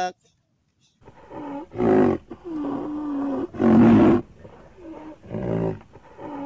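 A rhinoceros giving a run of loud bellowing calls, starting about a second in, with one call held for about a second in the middle.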